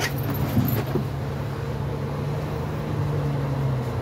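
Transit bus engine and drivetrain running with a steady low drone under road noise, heard from inside the passenger cabin. There is a sharp click right at the start.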